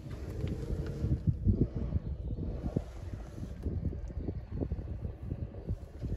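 Low, uneven rumble of wind buffeting a handheld microphone, broken by irregular soft thumps from the camera being handled and moved.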